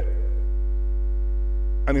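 Steady electrical hum: a loud, low drone with a ladder of fainter, steady higher tones above it, unchanging throughout.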